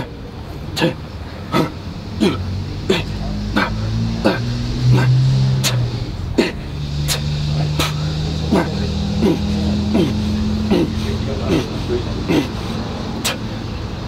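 A hip-hop style backing beat: a deep kick drum that drops in pitch, struck about every 0.7 s, over long held bass notes that change every few seconds.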